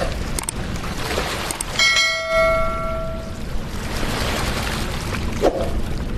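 Steady rushing-water noise under a short click and a bell-like notification chime about two seconds in, ringing out for about a second and a half: the click-and-bell sound effect of an animated subscribe button.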